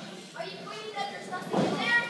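Voices in a small hall calling out during a wrestling match, with a louder, high-pitched shout about a second and a half in.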